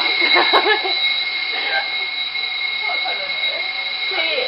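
Building fire alarm sounding a continuous, steady high-pitched tone, with faint voices in the hallway.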